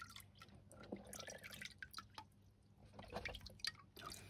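Faint dripping and small splashes of water in a wet-and-dry vacuum cleaner's tank, with scattered light clicks as the tank is handled.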